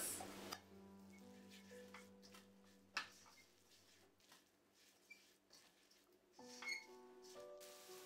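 Near silence with faint background music of soft held notes, broken by a brief click about three seconds in and another short faint sound a little before the end.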